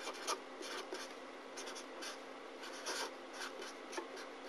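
Felt-tip marker pen writing on paper: a string of short, faint scratching strokes as the letters and figures are drawn.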